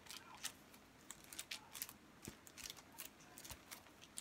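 Faint, irregular small clicks and ticks of a sheet of scrapbook stickers being handled.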